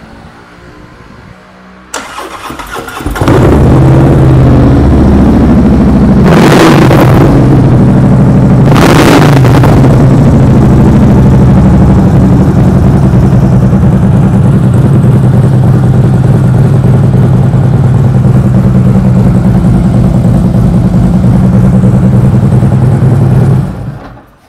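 A 2015 Harley-Davidson Road Glide Special's Twin Cam 103 V-twin is cranked by the starter and catches, then runs at a loud, steady idle through aftermarket CFR mufflers and Freedom Performance headers. It is revved briefly twice early on and is shut off just before the end.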